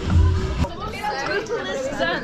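People chatting over background music with a heavy bass in the first half second.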